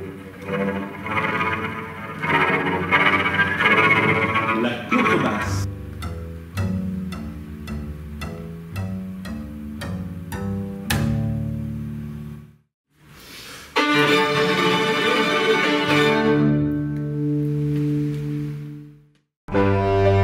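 Solo cello played with the bow, a flowing melodic passage for the first five seconds or so. Then a double bass bows a run of short, detached low notes. After a brief break about halfway through, long held low bowed notes follow.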